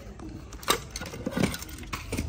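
A few sharp metallic clinks and knocks as a small used brushcutter engine is pushed and lifted off the floor, the loudest under a second in.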